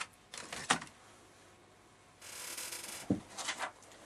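Hands handling craft materials at a tabletop: a few soft clicks, a brief rustle a little after two seconds in, then a single knock about three seconds in.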